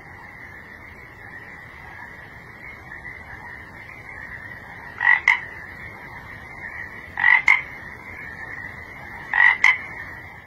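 Frog croaks over a steady high-pitched background chorus: three loud double croaks, each two quick notes, about two seconds apart, starting about halfway through.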